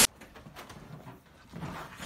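A sheep sniffing and nuzzling at a cat up close: quiet, irregular soft animal sounds, a little fuller near the end.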